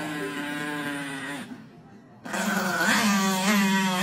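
Chihuahua growling and snarling in long, drawn-out growls that sound like a revving motorcycle engine. One growl fades out about a second and a half in, and a second, louder one starts just past the halfway point.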